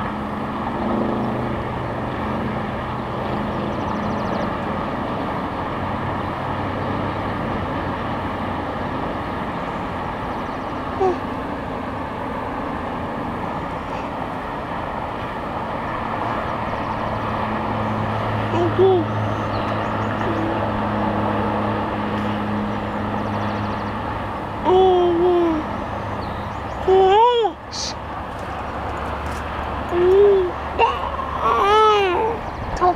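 Rattlesnake rattling: a steady, unbroken dry buzz that holds without a break, the snake's defensive warning. A baby makes a few short cooing or fussing sounds in the second half.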